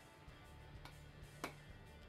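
A 12-gauge shotgun shell being pushed back into a Saiga-12 style AK shotgun box magazine: a faint click, then a sharper click about half a second later. The click means the shell has dropped into a further channel at the back of the magazine and is now fully seated, which makes it feed properly.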